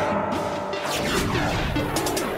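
Logo-intro sound effect over electronic music: a sharp crash-like impact hit about a second in, followed by falling, ringing tones.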